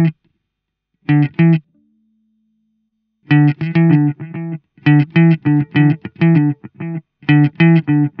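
Clean electric guitar played through a Blackstar Silverline Deluxe amp with its delay effect engaged. It plays quick phrases of short picked notes, with a pause about a second in and a faint held note before the phrases resume.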